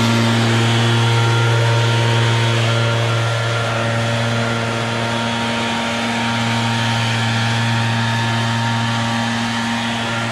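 RedMax commercial two-stroke gas backpack leaf blower running steadily, a strong constant engine drone with air rush, getting a little fainter from about three seconds in as it moves away.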